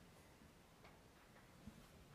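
Near silence: room tone with two faint clicks, one about a second in and one near the end.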